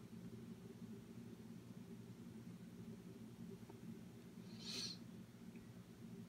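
Near silence: a faint steady low hum of room tone, with one brief soft hiss about three-quarters of the way through.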